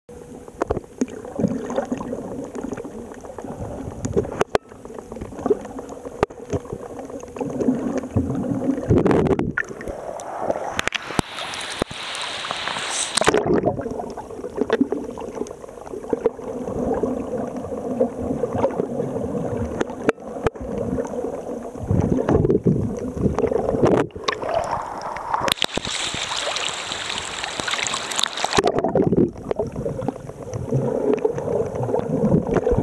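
Muffled underwater water noise picked up through a camera's housing, with a faint steady hum, scattered clicks, and two longer hissing rushes, about eleven seconds in and again about twenty-six seconds in.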